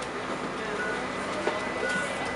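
Cabin noise inside a Phileas bus on the move: steady rolling noise with a thin, high, steady whine from the electric drive and a faint low hum.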